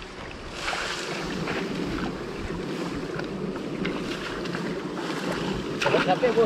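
Water sloshing and splashing as a large framed sieve net is dragged through shallow water and reeds and lifted out, with scattered small splashes and a louder splash near the end. Wind buffets the microphone.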